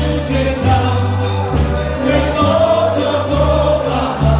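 Live dance band playing a dance tune: a steady beat over a bass line that changes note about every half second, with singing on top.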